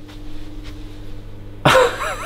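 A faint steady low hum in a quiet room, then near the end a man breaks into a sudden loud, breathy laugh.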